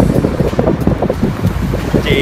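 Wind buffeting the microphone: a loud, uneven low rumble that swells and dips in gusts.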